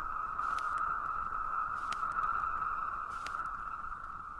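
Electronic drone from the end of a dubstep mix: a steady high tone over a low hiss, with a sharp click about every second and a half. It begins to fade near the end.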